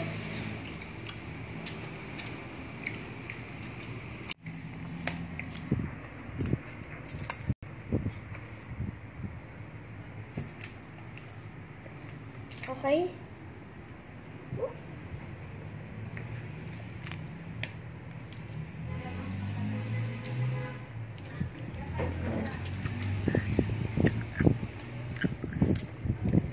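A small child's brief wordless vocal sounds, including one short rising squeal about 13 seconds in, over low room noise. Scattered clicks of handling close to the microphone grow denser near the end.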